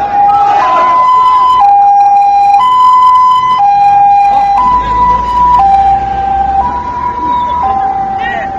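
Two-tone vehicle siren, loud and close, switching steadily between a higher and a lower note, each held about a second, over the voices of a crowd.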